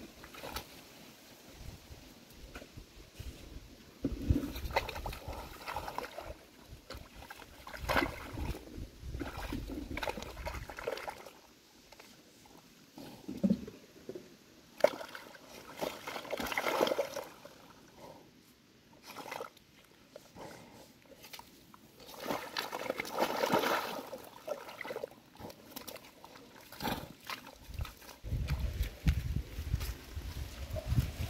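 Rhino moving in a mud wallow: wet mud and water sloshing in irregular bursts.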